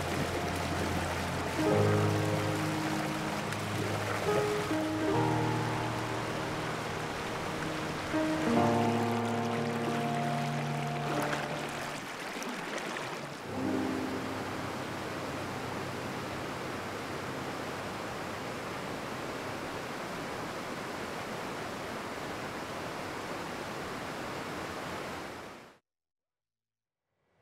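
Soft music of held, slowly changing chords over the steady rush of a waterfall. The music fades out about halfway through, leaving only the rushing water, which then fades away just before the end.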